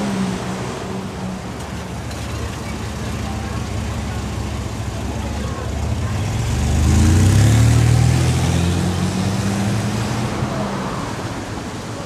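Street traffic with a vehicle passing: a low engine rumble swells to its loudest about seven seconds in and then fades away.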